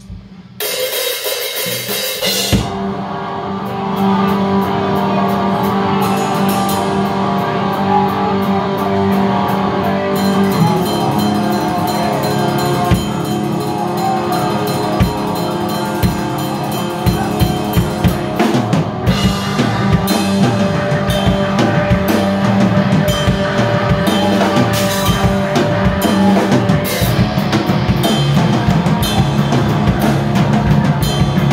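A band playing loudly in a small room: a drum kit with kick, snare and cymbals under amplified electric guitars. It starts about half a second in and fills out to full volume around four seconds in.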